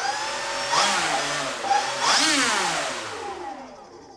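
Twin electric motors and propellers of a Hangar 9 Twin Otter RC model running in reverse thrust, throttled up and back down: a loud whine and prop wash whose pitch rises and then falls, fading as the propellers spin down near the end.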